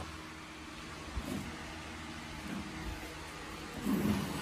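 Steady low background rumble of room tone, with a faint knock about a second in and another near three seconds.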